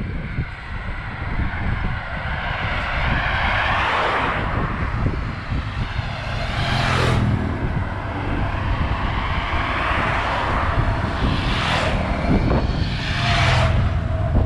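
Several vehicles passing at highway speed, one after another, each a swell of engine and tyre noise that rises and fades; the sharpest pass comes about seven seconds in.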